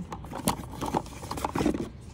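A cardboard fuel-filter box and the new pleated filter cartridge being handled: a series of irregular scrapes, rustles and light taps.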